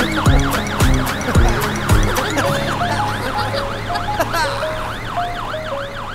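Cartoon fire engine siren wailing in a fast rising-and-falling cycle, fading as the truck drives away. Children's music with drum hits plays under it during the first two seconds, then lighter melody notes.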